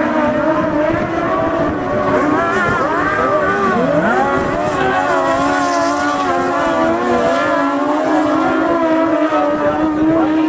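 Speedway sidecar engines racing, several outfits running hard together. Their pitch wavers as they rev through the corners, dropping sharply and climbing again about four seconds in.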